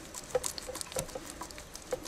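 A hand screwdriver turning a wood screw through a metal bracket into wood: irregular small squeaks and clicks as the screw turns.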